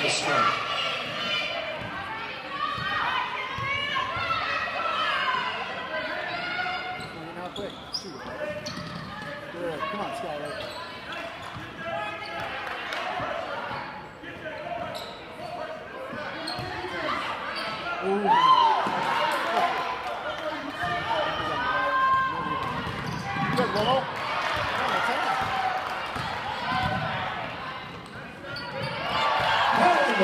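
Basketball game in a gymnasium: a ball bouncing on the hardwood floor among the voices of players and spectators, all echoing in the large hall.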